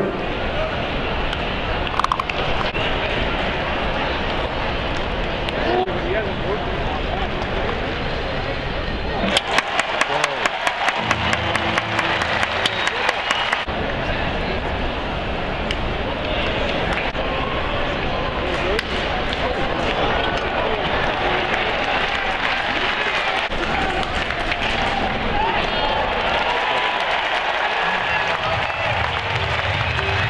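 Ballpark crowd chatter: a steady murmur of many voices from the stands. About nine seconds in, a quick run of sharp clicks lasts a few seconds.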